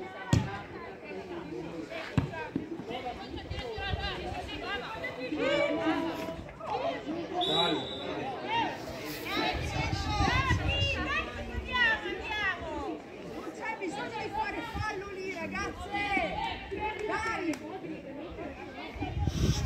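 Untranscribed voices calling out and chattering across the pitch and sidelines during a football match, with two sharp knocks near the start.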